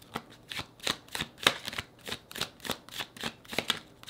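Tarot deck shuffled by hand, packets of cards lifted and dropped from one hand onto the other: a quick run of soft card slaps and riffles, about three or four a second.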